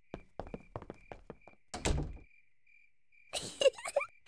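Quick, light cartoon footsteps tapping across a floor, then a door closing with one dull thud about two seconds in.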